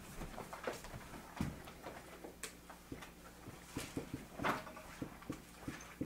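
Dry-erase marker writing on a whiteboard: a run of short scratches and taps from the tip on the board, with light handling noises.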